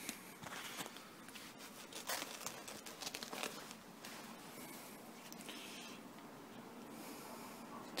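Small wood-burning rocket stove made from a plant pot, its fire crackling faintly with irregular small pops over a soft hiss.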